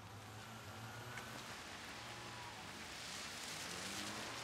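Rain falling on an umbrella and a wet street, with a steady low hum of town traffic. A hiss swells near the end, like tyres on the wet road.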